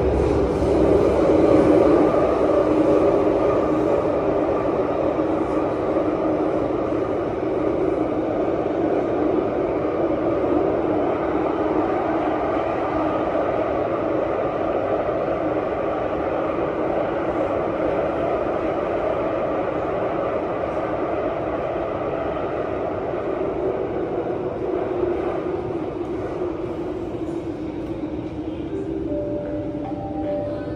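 Steady running noise inside a Downtown Line metro car, a rumble with a motor hum, heard from the cabin. It eases off over the last part as the train slows for a station.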